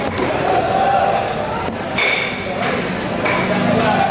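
Large curved fish knife chopping parrotfish on a wooden chopping block, with one strike about two seconds in giving a short metallic ring.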